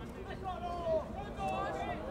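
Faint, distant voices calling and shouting across a football pitch during play, over low open-air background noise.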